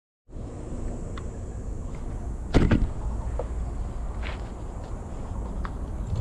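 Handling noise on an FPV drone's GoPro microphone as the drone is set down on the ground. There is a sharp knock with a quick clatter about two and a half seconds in and a few lighter clicks, over a steady low rumble.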